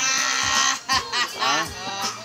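Men's voices: one loud, drawn-out cry held for most of a second, then shorter rising and falling calls.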